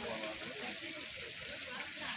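Steady hiss of open-air ambience with faint voices talking in the background, and one sharp click about a quarter second in.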